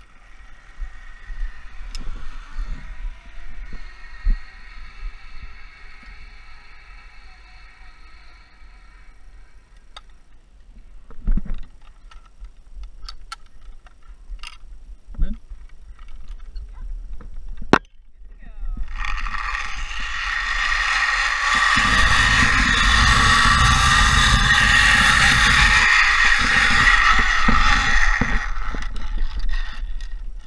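Zipline trolley pulleys running along a steel cable. A fainter whine early on and a few sharp knocks come first; about two-thirds of the way in, a loud, steady whirring hiss builds, with wind buffeting the microphone under it.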